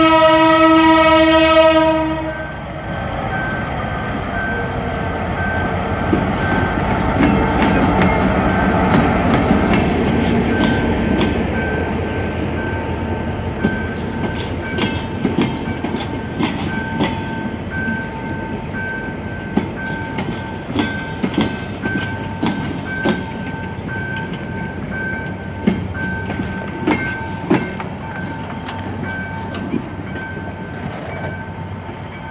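G22 diesel-electric locomotive's horn blast, the loudest sound, ending about two seconds in. Then the locomotive's engine and the train's coaches roll past, with repeated clicking of wheels over rail joints. A steady repeated beeping, a level-crossing warning signal, runs underneath.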